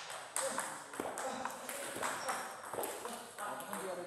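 Table tennis balls being hit back and forth in rallies on two tables at once: sharp, irregular clicks of the celluloid ball off rubber paddles and bouncing off the table tops.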